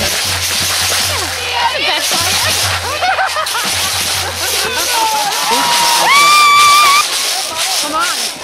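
Crowd of fans and players at a football field shouting and cheering with many overlapping voices; one long, high held yell about six seconds in is the loudest sound.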